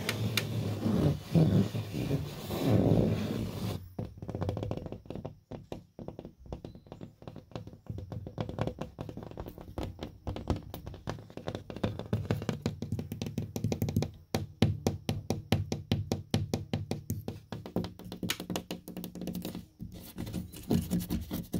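Fingers scratching and rubbing the paper face of a drywall board for the first few seconds, then rapid fingertip tapping on the board: many short dull taps, several a second, growing faster and denser in the second half.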